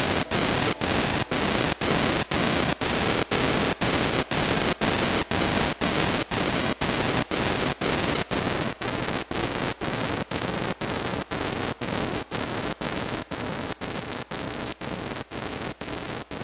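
Harsh static-like noise from a guitar effects pedal rig, chopped into a steady stutter about two or three times a second, slowly getting quieter toward the end.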